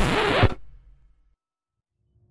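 A loud rushing, scratchy sound effect from a cartoon soundtrack stops abruptly about half a second in, trails off, and gives way to silence.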